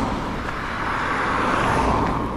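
A motor vehicle passing on the road: steady tyre and engine noise that grows louder in the second half.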